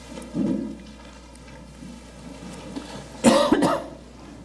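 A person coughing: a short, harsh run of coughs near the end, with a softer low sound about half a second in.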